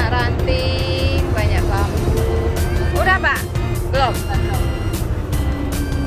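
A moored wooden boat's engine running with a steady low rumble. Short high-pitched voices call out over it now and then.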